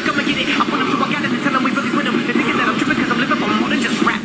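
A street-dance routine's edited audio mix playing loudly over a hall's PA: a section of voices over a steady noise rather than the rapped music on either side.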